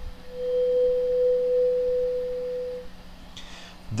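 A small 512 Hz tuning fork (the C an octave above middle C) ringing with a single steady pure tone, which dies away just under three seconds in.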